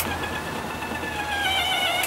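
Snow Joe iON 40V hybrid snow thrower's electric chute-rotation motor whining steadily as the chute swivels slowly to one side. Its pitch creeps up a little, and a low hum under it stops shortly before the end.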